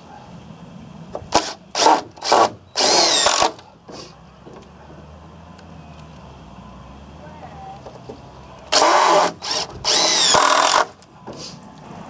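Cordless drill-driver driving three-inch wood screws into timber: a few short blips and then a longer run whose whine rises in pitch, once early and again about six seconds later, one run for each screw.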